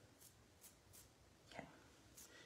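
Near silence, broken by a few faint, soft high ticks about half a second apart: a finger flicking the bristles of a paint-loaded toothbrush to spatter white paint.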